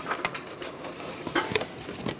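A new oil filter being turned by hand onto its threaded engine mount: light scraping and rubbing with a few short clicks, the loudest a little under a second and a half in.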